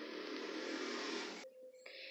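Black crochet yarn rustling as it is drawn through a stitch with a fine crochet hook: a steady, soft rustling hiss that cuts off suddenly about one and a half seconds in, followed by a brief faint rustle near the end.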